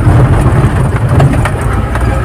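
Engine and road noise of a Mahindra vehicle, heard from inside the cabin while driving: a steady low rumble.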